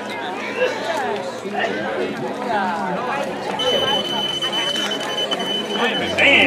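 Chatter of voices, and a few seconds in a steady, high electronic beep that holds for over two seconds: the finish-line chip-timing system reading runners as they cross the timing mats.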